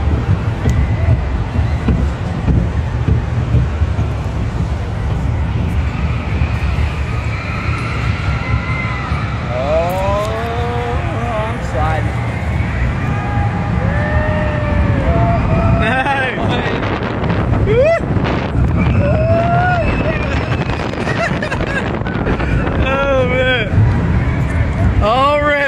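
Pepsi Orange Streak roller coaster train running along its steel track, heard from on board as a loud, steady low rumble with wind on the microphone. From about ten seconds in, riders' voices cry out several times in short rising-and-falling calls.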